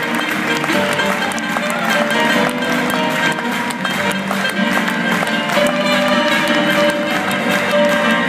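Live jazz band playing an instrumental passage on piano, upright bass, drums and saxophone, heard from far back in a large concert hall. One note is held long from about five and a half seconds in.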